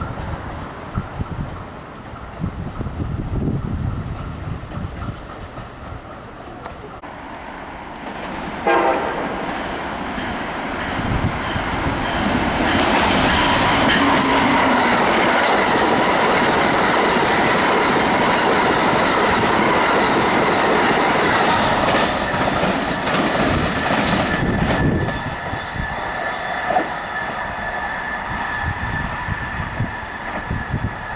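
Amtrak electric train of Amfleet coaches approaching and passing through the station at speed. A short horn blast sounds about nine seconds in, then the cars go by loudly on the rails for about twelve seconds before the sound eases as the train passes.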